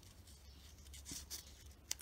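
Faint rubbing and light ticks of laser-cut plywood wheel discs turned in the fingers as an aluminium tube is pushed through their centre, with one sharper click near the end.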